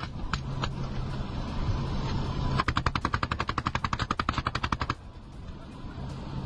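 Gunfire at weapons training: a few single shots, then a little over two seconds in, a long burst of rapid, evenly spaced automatic fire lasting about two seconds before it stops abruptly.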